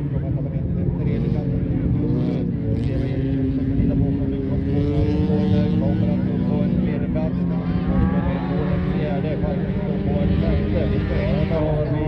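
Race car engine running hard on a loose-surface track, its pitch rising and falling as it revs up and eases off through the corners.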